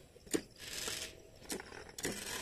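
Hand pump of a stainless-steel knapsack sprayer being worked: soft clicks and swishing strokes, twice, as the tank is pressurized before the spray valve is opened.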